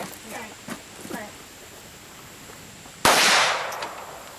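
A single gunshot about three seconds in, sudden and loud, dying away over most of a second.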